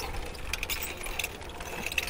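A steady low mechanical hum, like an idling engine, under a faint even hiss.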